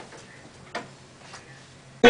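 A few short, soft clicks over a faint steady hum, the loudest click about three quarters of a second in.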